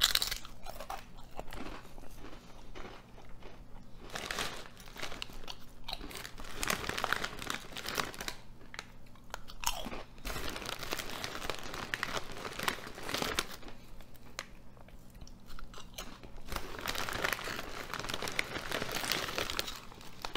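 Ruffles ridged potato chips bitten and crunched close to the microphone: a sharp bite at the very start, then stretches of crackly chewing with a couple of short lulls.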